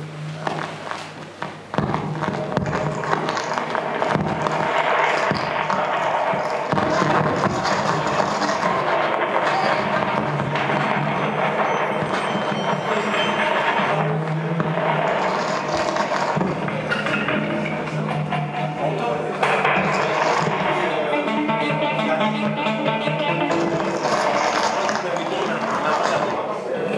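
Live experimental noise music made by hand on an amplified wooden box fitted with springs and metal rods. It is quieter for the first two seconds, then becomes a dense, continuous mass of noise with low drones running through it.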